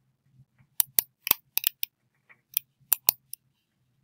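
About ten sharp computer mouse clicks, several in quick runs, as dropdown menus on a web form are clicked.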